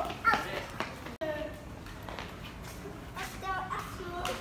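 Children's voices and chatter at moderate to low level, after a single spoken word at the start, with a momentary dropout in the sound about a second in.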